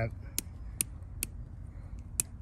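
Three sharp metallic clicks about 0.4 s apart from the push-button locking head of a small stubby three-eighths-drive ratchet, clicking into its lock positions as the head is worked by hand.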